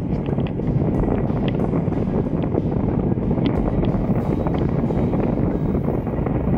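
Wind buffeting a camera microphone while wingfoiling at speed over water: a steady, dense low rumble with scattered light ticks.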